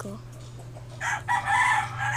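A rooster crowing once, a raspy call of about a second starting about halfway through, over a steady low hum.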